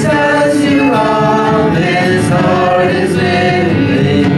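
Live worship music: several voices singing a song together, the sung line carrying over a light accompaniment.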